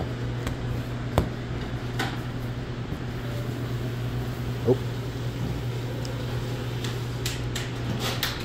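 Steady low machine hum of a commercial kitchen's ventilation and equipment, with a few light clicks and taps in the first couple of seconds as dough is handled on a stainless-steel table.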